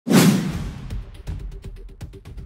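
An intro sound effect: a loud whoosh with a hit right at the start that dies away over about half a second. It is followed by percussive intro music with a quick, regular beat.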